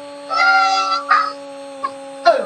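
A man's long, high-pitched yell celebrating a goal, followed by a short second shout, over a steady humming tone.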